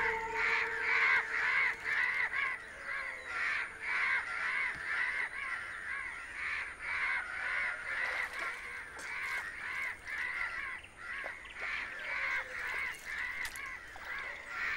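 A flock of crows cawing, many calls overlapping in a constant run of caws.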